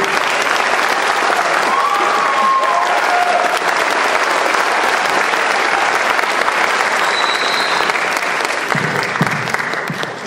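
Audience applauding in a hall, a steady clapping that thins out near the end, with a few brief whoops and a short high whistle from the crowd.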